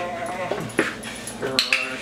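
A dog whining and yipping in short, high cries during play with a towel toy, a sign of the playful excitement the trainer is trying to draw out. The cries come at the start and again about a second and a half in, with a sharp click between them.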